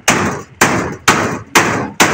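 Hammer blows struck at a steady pace, about two a second, four in all, each with a short ringing tail: building work on the roof.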